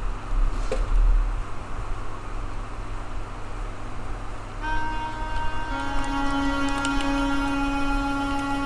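Sampled harmonica notes from a browser SoundFont keyboard, played by typing on a computer keyboard. After a low rumble and hum, held chords begin about halfway through and change once, with light key clicks.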